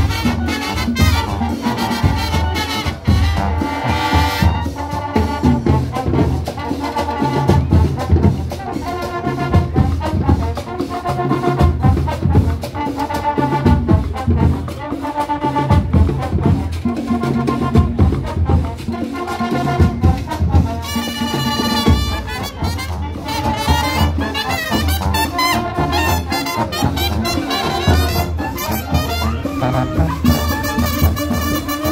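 Marching band playing live: brass section with trumpets, trombones and sousaphone over a steady drum beat, carrying an upbeat tune.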